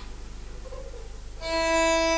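A soft click, then a quiet pause, then a single steady held musical note begins about one and a half seconds in as the playing starts.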